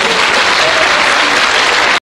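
Studio audience applauding at the end of a song.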